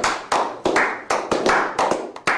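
Hands clapping in applause, a quick, uneven run of sharp claps, about five or six a second.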